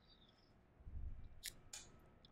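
Two quick, sharp clicks about a quarter second apart from working a computer's controls, after a soft low thump about a second in; otherwise quiet.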